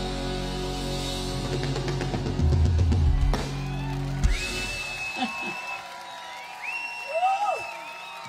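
Live rock band ending a song on a held chord with drum hits, cutting off about four seconds in. The audience then cheers, with whistling.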